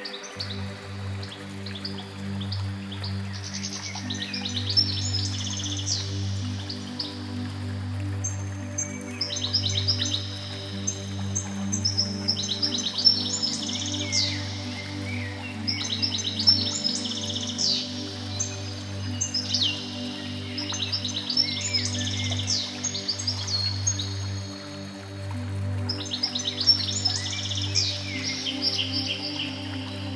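Slow ambient music of sustained low chords, with songbirds layered over it: groups of quick high chirps and falling trills that come back every few seconds.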